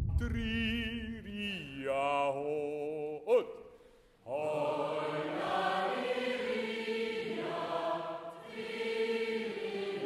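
Live choir concert recording playing back: a single voice sings a short, wavering phrase. After a click and a brief drop-out near the middle, a large group of voices sings together in sustained notes.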